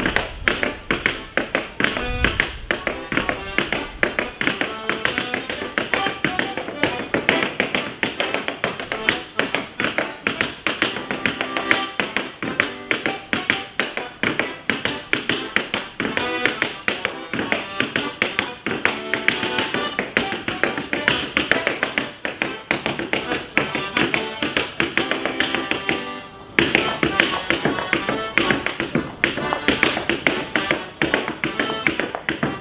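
Clog dancing: fast, rhythmic taps of wooden-soled clogs on a stage floor, danced as a hornpipe to accordion music. The taps break off for a moment about four seconds before the end, then come back louder.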